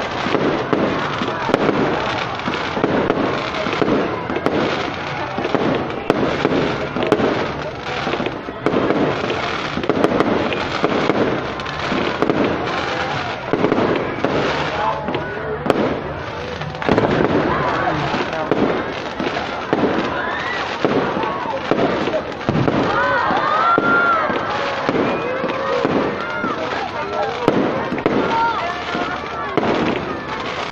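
Aerial fireworks going off in rapid succession, a dense run of bangs and crackling overhead, with people's voices mixed in.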